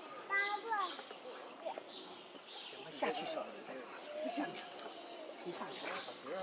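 Murmured voices of onlookers, with a few crisp crunches from a giant panda biting and chewing a bamboo shoot, over a steady high insect drone.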